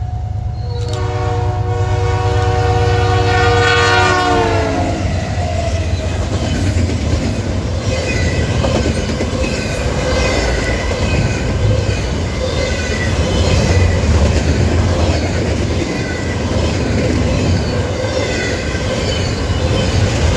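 Norfolk Southern diesel locomotive sounding one long multi-note horn chord as it approaches, the pitch dropping as it passes about four seconds in. Then a steady rumble and clatter of double-stack intermodal container cars rolling by, with wheel clicks over the rail joints and faint intermittent squeals.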